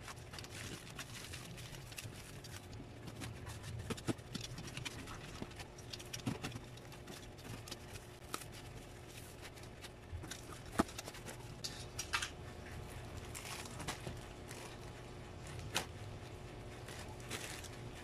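Parcel unpacking by hand: bubble wrap crinkling as it is torn off, then a utility knife and fingers scraping and tearing the cardboard box open, giving irregular crackles, rustles and taps. A sharp click stands out a little past the middle.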